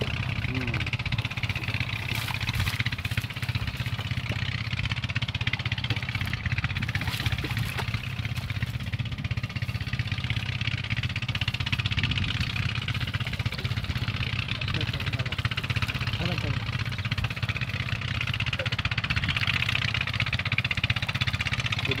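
An engine running steadily at a constant speed, a continuous low drone throughout.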